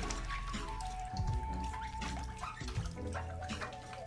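Water sloshing and dripping as dirty canister-filter foam pads are dunked and swished in a bucket of water, under background music with long held notes.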